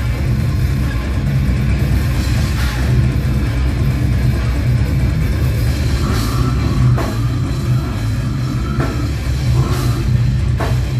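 A death metal band playing live through a club PA: distorted electric guitars, bass and a drum kit in a loud, unbroken wall of sound that is heavy in the low end.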